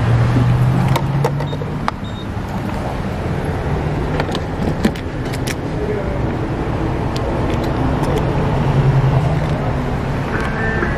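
Muffled rubbing and handling noise from a phone held against a cotton tank top, over a loud, steady low hum, with a few sharp clicks in the first half.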